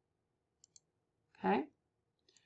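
Computer mouse button clicked twice in quick succession, two light ticks about a tenth of a second apart, navigating between web pages.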